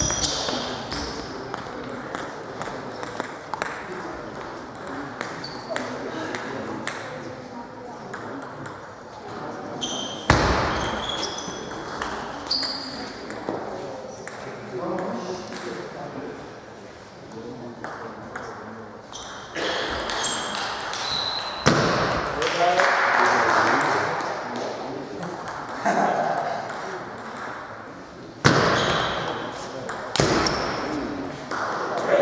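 Table tennis rallies: the ball clicking sharply off the players' bats and bouncing on the table in runs of quick ticks, with pauses between points.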